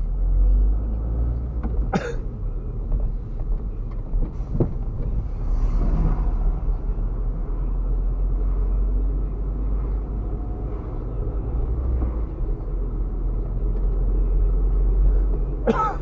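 Steady low rumble of a car driving along a street, heard from inside the cabin: engine and tyre noise with no change in pace.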